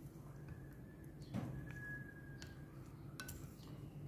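Bamboo chopsticks tapping and clinking against a bowl and the pork bones being stirred in hot water: a few faint, separate taps, one clink ringing briefly about halfway through.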